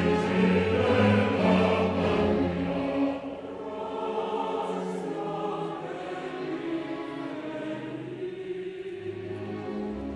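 Opera chorus singing with the orchestra in sustained chords, loud for about the first three seconds, then dropping to softer held harmonies.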